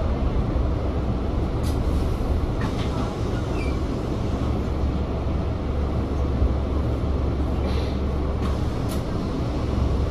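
Onboard sound from the top deck of a Volvo B5TL double-decker bus: a steady low rumble from its diesel engine and running gear. A few short, sharper clicks or hisses come through about two seconds in and again near the end.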